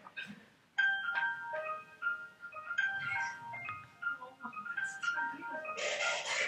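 A simple electronic melody of short single notes stepping up and down in pitch, starting about a second in: a student group's composition made in a music looping app, being played back.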